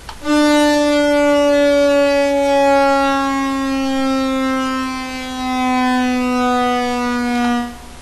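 Sylenth1 software synthesizer sustaining a single note whose pitch slides slowly and steadily downward under pitch-bend automation, a 'downer' for a transition. The note cuts off shortly before the end.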